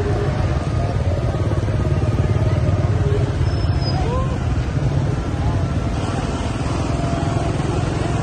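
Several small motorbikes and scooters running at walking pace close by, a steady low engine rumble, with crowd voices over it.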